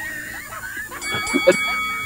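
Background music with sustained notes coming in about a second in, under faint laughter.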